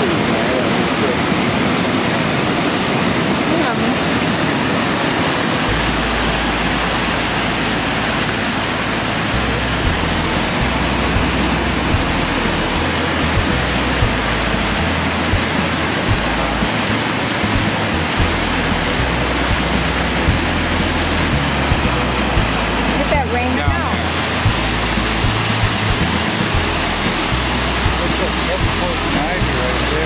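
Large waterfall roaring: a loud, steady rush of falling water, with a wavering low rumble underneath.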